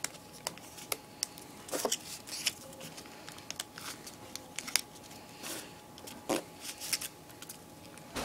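Paper being folded and creased by hand into an origami bird: irregular small crinkles and crackles, with a few sharper ones scattered through.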